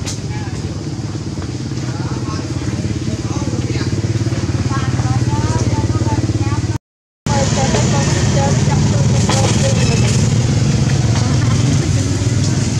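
Motor engine running steadily nearby: a loud, even low drone with a fast pulse, cutting out briefly about seven seconds in. Faint short, high chirping calls sound over it.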